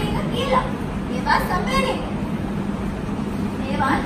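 Speech: a few short spoken phrases from performers on stage, over a steady low hum.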